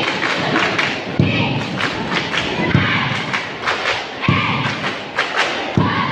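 A large bench-cheer squad performing together: massed voices chanting and shouting, with heavy rhythmic thumps about every second and a half and sharp claps in between.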